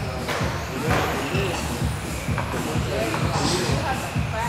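Indistinct voices talking over background music in a large indoor hall.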